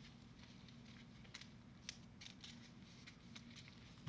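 Near silence: room tone with a faint low hum and a few faint, scattered ticks.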